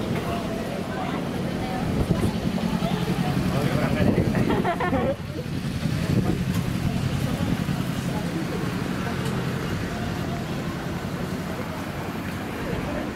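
Busy street: passers-by talking nearby, loudest in the first half, over the steady low hum of cars driving slowly along the road.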